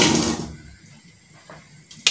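A brief scraping rustle of something being handled and set down on the kitchen counter, right at the start, then a quiet room with one faint click.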